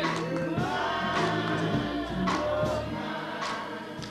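Choir singing with instrumental backing, in the style of gospel music.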